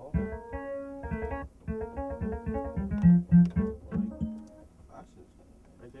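Electronic keyboard played by hand, a run of chords over low bass notes, the chords for a song's hook. The notes stop about four and a half seconds in, leaving only faint sound.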